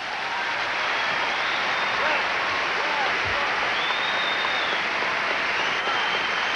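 Large audience applauding and cheering at the end of a song. The applause swells in the first second and then holds steady.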